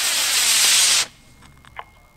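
Estes C6-5 black-powder model rocket motor burning in flight: a loud, even hiss that cuts off suddenly about a second in at burnout, as the rocket coasts into its delay.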